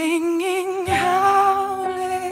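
A woman's voice in an acoustic song, singing a wordless line with wavering vibrato that settles into one long held note about a second in.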